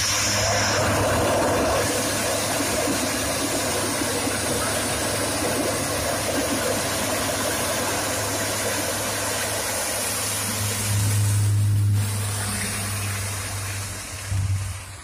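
Lockheed C-130J Hercules transport plane's four turboprop engines and six-bladed propellers running as the aircraft rolls along the runway: a loud, steady low drone. It swells louder briefly near the end.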